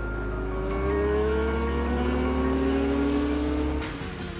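Kawasaki ZZR1400's inline-four engine accelerating hard, its note rising steadily in pitch, over background music with a steady bass; both cut off sharply just before the end.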